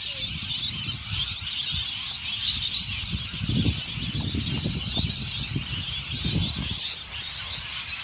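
Rumbling handling noise and rustling footsteps as a phone is carried across grass, over a steady high-pitched hiss in the background.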